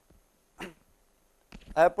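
A man's lecture speech with a pause: one short voiced sound about half a second in, then near silence, then speech resuming near the end.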